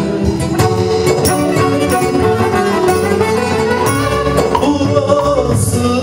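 Live Turkish folk music (türkü) from a small band: bağlama, violin and keyboard playing a melody over a steady percussion beat.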